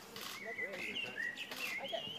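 A songbird singing a quick, warbling song that starts about half a second in, over quiet conversation.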